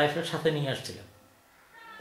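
A man's voice speaking a drawn-out word that trails off into a short pause.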